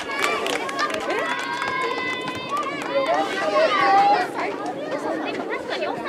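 Several high-pitched children's voices calling and shouting over one another during a youth soccer game, with no clear words.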